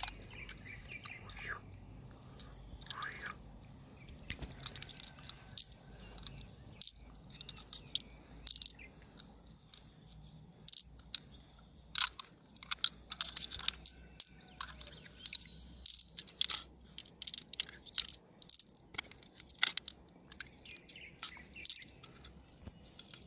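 Small hard round beads clicking against one another and against the mussel shell as they are picked out and piled in a palm. There are many quick, irregular clicks, sparse at first and coming thick and fast from about a third of the way in.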